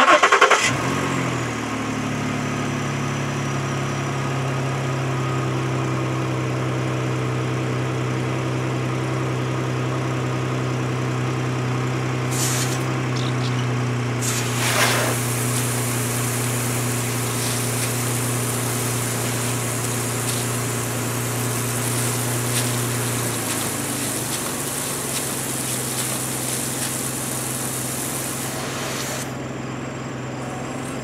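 Ford Taurus engine cranking briefly and catching, then idling steadily; the idle steps down a little about two-thirds of the way in. About halfway through a hiss joins as the washers spray fluid onto the windshield, stopping shortly before the end.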